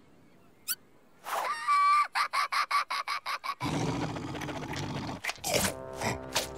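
Cartoon sound effects: after near silence and a single click, a short held tone is followed by a quick run of sharp taps, about six a second. A noisy rush follows, and music comes in near the end.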